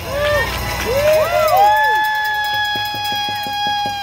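Union rally crowd cheering: several whoops rising and falling in pitch, then one long, steady high call held for over two seconds, cut off near the end, with a quick run of taps beneath it.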